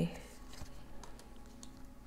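Faint, scattered light clicks and rustles of a tarot card being drawn from the deck and laid down on the table.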